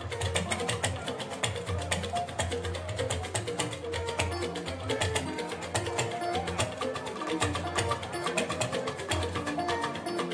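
Live fuji band music: dense, fast hand-drum percussion over a steady beat, with pitched instruments running underneath.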